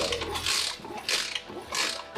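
A mini motorbike's kick-starter being kicked over three times, about two-thirds of a second apart, with a mechanical ratcheting sound and no engine catching.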